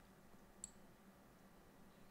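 Near silence: room tone, with one short, light click a little over half a second in.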